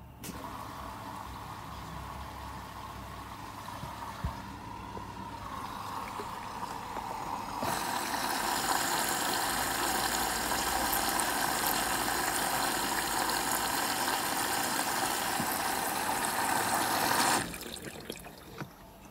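Logik L712WM13 washing machine filling with water for its final rinse: water rushes in through the detergent drawer, starting at once, growing louder about halfway through, then stopping suddenly near the end.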